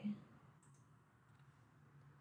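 A few faint, short clicks at a computer over a low steady hum, after the end of a spoken word at the very start.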